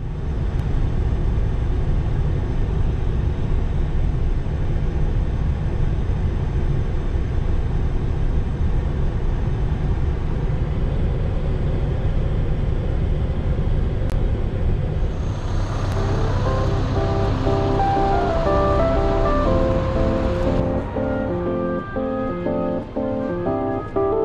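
Steady low rumble of a large truck's engine and road noise heard inside the cab at highway speed. About two-thirds of the way through, music with a clear note-by-note melody comes in, and the rumble drops away near the end.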